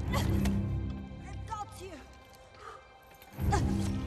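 Action-film soundtrack: dramatic score that is loud and heavy in the bass at the start and surges again with a heavy hit about three and a half seconds in. In the quieter middle there are short vocal sounds, such as grunts or cries.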